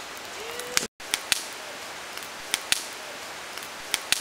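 Wood campfire crackling, with sharp irregular pops over a steady hiss. The sound drops out for an instant just before a second in.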